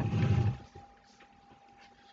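A short, low, rough vocal sound from a person, like a grunt, lasting about half a second at the start. After it there is only a faint steady high tone.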